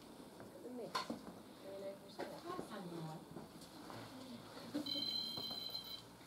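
Faint, indistinct voices talking quietly, with a sharp click about a second in. Near the end a steady, high electronic tone sounds for about a second.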